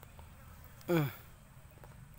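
A fly buzzing close past the microphone, one short buzz about a second in whose pitch drops steeply as it passes, over faint outdoor background.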